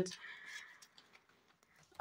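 Faint rustling of paper banknotes and a clear plastic binder pouch being handled, mostly in the first second.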